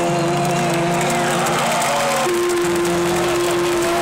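Live band music near the close of a song, with long held notes that shift to a new pitch about halfway through. The music is heard over the noise of the surrounding crowd, recorded from within the audience.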